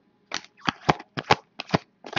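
A stack of 2015 Bowman's Best baseball cards being flipped through by hand, each card snapping as it is pulled off the stack. The result is a quick, uneven run of about eight sharp snaps.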